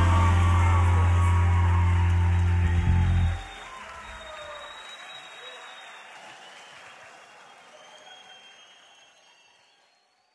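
A live salsa band holding its final chord, which cuts off about three seconds in. Audience applause follows and fades away to silence.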